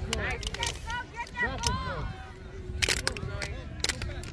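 Indistinct voices of players and spectators calling out across a soccer field, with wind rumbling on the microphone. Two sharp knocks come near the end.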